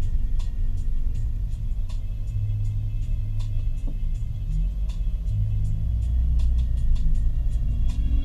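Low, steady road and engine rumble inside a moving car's cabin, with music playing over it; the music's held bass notes change every second or two.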